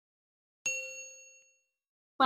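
A single bright ding, the notification-bell chime sound effect of a subscribe-button animation. It rings out and fades away over about a second.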